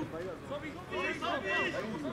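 Voices on and around a football pitch calling out, with no clear words; the loudest calls come about a second in.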